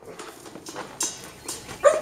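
A dog moving about its wire-mesh kennel: faint scuffing and a few light clicks, with a brief hiss about halfway through.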